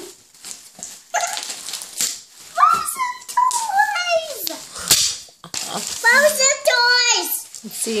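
A young child's excited high-pitched squeals and wordless exclaiming in three bursts, with short crinkles of gift-wrap paper being handled between them.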